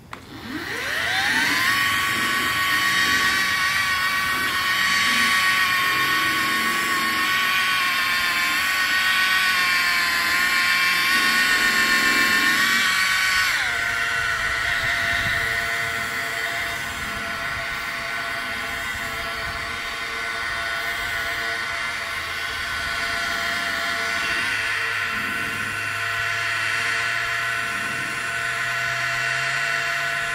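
DeWalt cordless rotary polisher with a red foam finishing pad spinning up and running steadily with a high motor whine. A little before halfway through the whine drops to a lower steady pitch as the polisher is turned down to its lowest speed to finish the polish.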